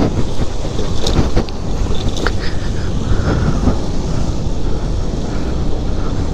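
Wind rushing over the microphone of a moving motorbike: a loud, steady low rumble, with the bike's engine and road noise beneath it.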